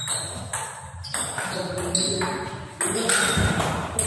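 Table tennis rally: the ball clicking sharply off the rackets and the table, a string of hits roughly every half second, each with a short ring.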